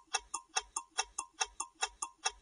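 Countdown-timer clock ticking sound effect: a quick, even ticking, a little over four ticks a second, while the time to answer runs out.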